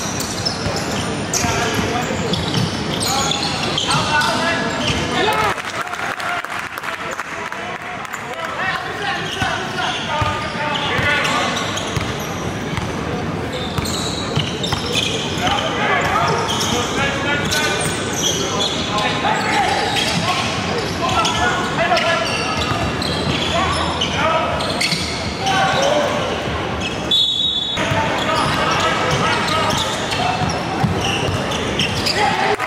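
Live gym sound of a high school basketball game: a basketball dribbling on the hardwood court under echoing voices of players and spectators in the hall.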